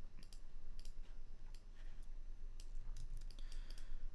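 Light, irregular clicks of a computer keyboard and mouse, several a second with short gaps.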